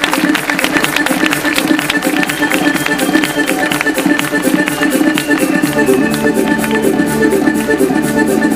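Accordion playing a fast dance tune over a quick, steady beat. A low held bass note joins a little past halfway.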